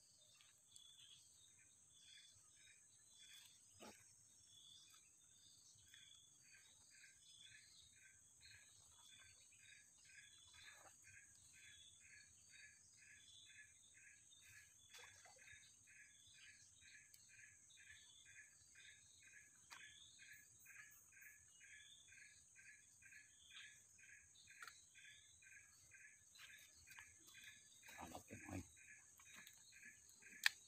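Faint tropical insect chorus: a steady high-pitched drone, scattered chirps, and from a few seconds in an evenly repeating chirp about two to three times a second. A few soft low knocks come near the end.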